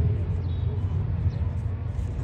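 Outdoor background noise: a steady low rumble with faint, indistinct voices.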